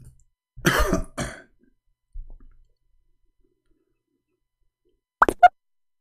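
A man coughs twice in quick succession about a second in. Near the end come two sharp clicks.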